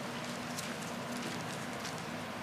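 Bible pages being turned, giving faint light ticks and rustles over a steady low room hum.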